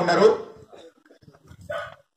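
A man's voice through a handheld microphone breaks off about half a second in, followed near the end by one short sound of a few tenths of a second.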